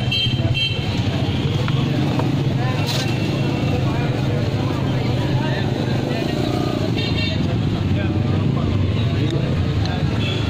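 Street traffic: a steady engine drone from passing motorcycles and cars, with the high stacked tone of a vehicle horn tooting briefly at about seven seconds, over indistinct voices.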